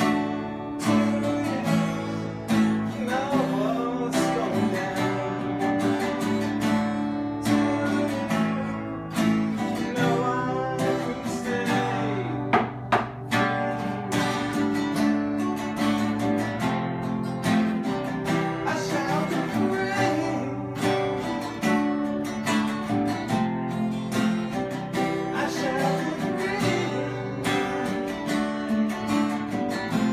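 Two acoustic guitars playing a tune together, continuously.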